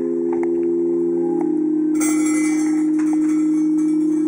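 Carved stone sound basin ringing with a sustained chord of several low tones, which swells and wavers slightly after about a second. From about two seconds in, small stones or grains scattered onto the stone rattle over it.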